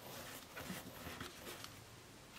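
Faint rustling and a few light taps of fingers pressing a paper sticker down onto a planner page.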